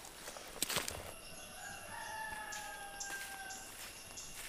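A faint rooster crowing, one long call of about two seconds that sags slowly in pitch, starting about a second and a half in. Just before it, two sandalled footsteps on stone.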